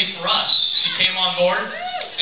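Indistinct voices talking, with a high-pitched voice rising and falling near the end.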